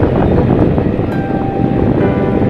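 Wind buffeting the microphone of a moving motorcycle, over steady engine and road noise.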